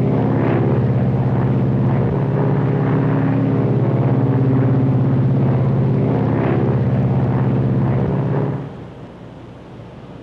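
Lockheed Super Constellation's four radial piston engines and propellers droning steadily on approach with the landing gear down, with a fast even propeller beat. The drone drops sharply to a quieter steady noise about eight and a half seconds in.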